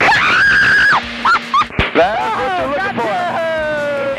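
A woman's high-pitched shriek held for about a second, followed by laughter and a long, falling exclamation.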